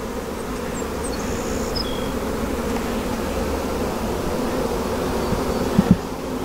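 Honeybee colony buzzing steadily from an open hive box, a dense even hum of many bees. A couple of sharp clicks sound just before the end.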